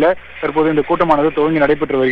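A man speaking Tamil over a telephone line, with the thin, narrow sound of a phone call.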